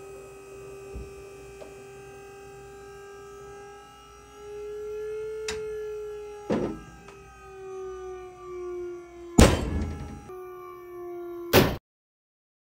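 Pull-test rig's motor whining steadily while it loads a 6 mm accessory-cord tailless BFK anchor, its pitch rising a little and then falling, with small creaks and pops as the knot tightens. About nine seconds in, the cord breaks with a loud bang at about 28 kN, and a second sharp bang follows about two seconds later.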